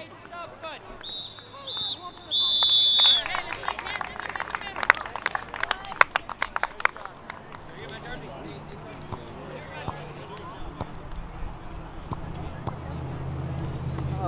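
Referee's whistle blown three times, two short blasts and then a longer one, signalling the end of the match. Spectators clap for a few seconds afterwards, with children's and adults' voices around.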